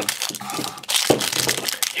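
A metallic foil blind-bag wrapper crinkling and crackling as it is handled and worked open by hand, in quick irregular crackles.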